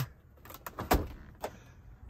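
A few sharp plastic clicks and a knock, the loudest about a second in, from the fold-down overhead DVD screen of a 2006 Toyota Land Cruiser being handled.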